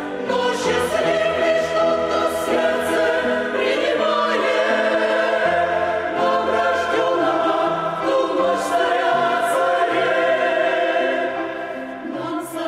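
Mixed choir of men's and women's voices singing a Christmas hymn in several parts, holding long notes in harmony.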